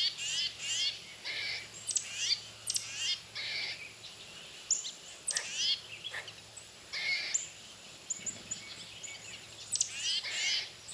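Birds singing and calling: repeated quick, high whistled notes that slide downward, mixed with short buzzy notes, coming in bursts.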